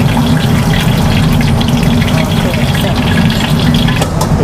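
Hot oil sizzling and crackling in a wok as freshly fried yardlong beans are lifted out in a wire strainer, over a steady low roar from the gas wok burner.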